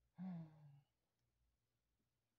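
A person's short voiced sigh, about half a second long, falling slightly in pitch.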